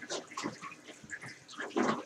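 Water sloshing and splashing in a terrarium's water basin in a run of small irregular splashes and knocks, with one louder splash near the end.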